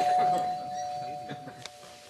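Doorbell chime ringing, a steady tone that slowly fades away.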